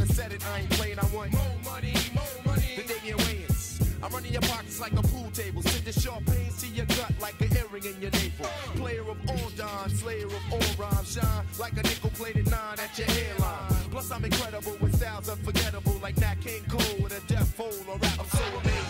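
1990s hip hop track: rapping over a steady drum beat and a heavy bass line.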